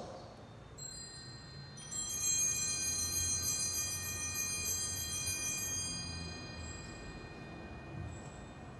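Altar bells rung at the elevation of the host during the consecration: two rings about a second apart near the start, the bright high tones then dying away over several seconds.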